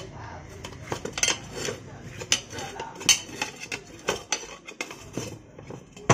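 Steel tyre levers clinking and scraping against a scooter's steel wheel rim while the tyre bead is pried over the rim: a run of irregular sharp metallic clinks, two or three a second.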